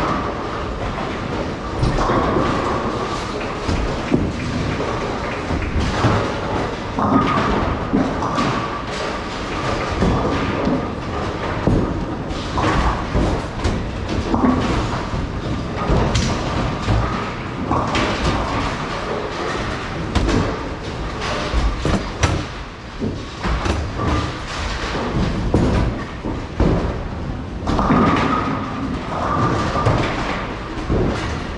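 Bowling alley din: balls rolling down the lanes with a steady rumble, and pins clattering and heavy thuds from many lanes at once, repeated throughout.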